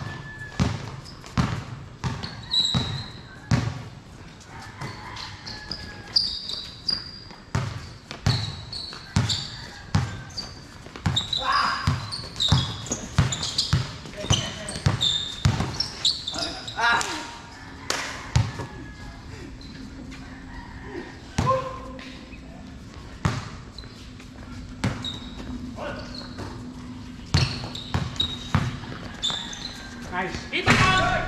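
A basketball bouncing again and again on a hard concrete court during a game, in short sharp thuds at an uneven pace, with players' voices calling out between them.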